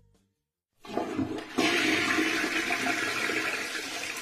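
Toilet flushing: rushing water starts about a second in, grows louder shortly after and then runs on steadily.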